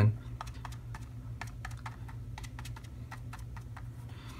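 Quick, irregular light taps and clicks of a paint sponge being dabbed along the edges of a painted terrain model as it is turned in the hand, over a steady low hum.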